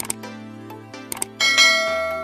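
Background music with mouse-click sound effects at the start and about a second in, then a bright bell chime about one and a half seconds in, the loudest sound, ringing on and fading: the sound effects of a subscribe-button and notification-bell animation.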